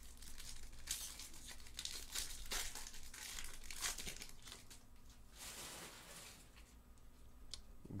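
Foil wrapper of a Topps Pristine baseball card pack crinkling and tearing as it is peeled open by hand, in irregular crackles.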